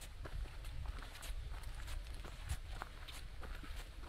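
A hiker's footsteps crunching on a gravelly dirt trail, about two steps a second, over a low rumble.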